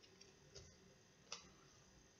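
Near silence with a few faint, irregular clicks, the loudest a little over a second in, from hockey trading cards being handled and shuffled.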